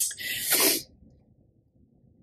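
A woman's sharp, noisy breath while crying, lasting under a second, with a brief voiced catch near its end.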